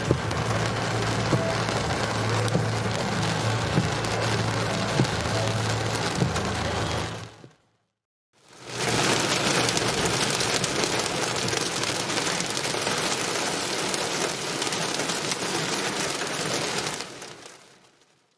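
Heavy rain drumming on a car's roof and windscreen, heard from inside the cabin, with a low engine hum under it at first. The sound fades out about seven seconds in, and after a brief silence an even heavier downpour fades in, then fades out again near the end.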